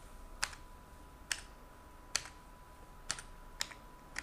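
Computer keyboard keys pressed one at a time, five separate clicks spaced about half a second to a second apart, as numbers are typed into spreadsheet cells. A faint steady high hum runs underneath.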